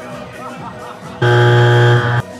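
A loud, steady horn-like buzz, one low pitched tone that starts suddenly a little past halfway, holds for about a second and cuts off suddenly. Before it, voices and music are heard.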